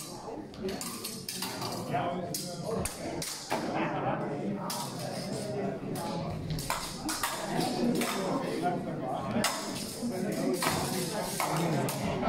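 Steel rapier blades clinking and scraping against each other in irregular sharp metallic clicks during a fencing exchange, over a murmur of voices in a large hall.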